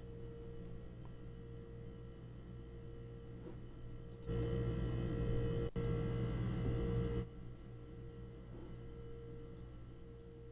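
Complex electrical hum: a steady buzz made of many stacked tones, only partly removed by a speech-restoration plugin. It comes up louder for about three seconds in the middle while the processing is switched off.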